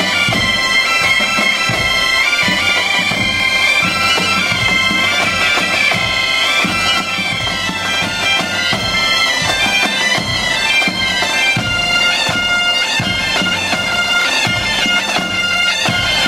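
Music: a bagpipe melody played over a steady drone.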